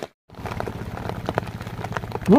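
Steady rain falling, with many scattered drops ticking close by and a low steady hum underneath, after a brief moment of silence at the very start.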